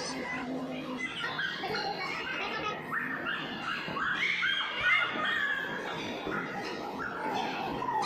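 Young children shrieking and calling out over one another at play, many short high-pitched cries overlapping.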